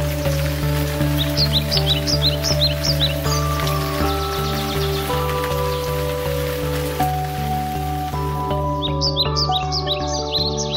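Slow, calm background music of long held notes over a steady low drone, with bird chirps mixed in from about one to three seconds in and again near the end.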